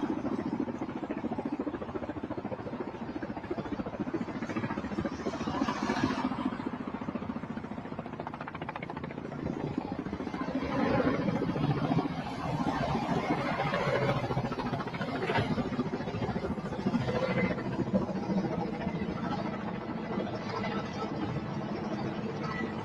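Outdoor ambience of vehicle engines running and passing traffic, a steady noisy rumble with some faint distant voices.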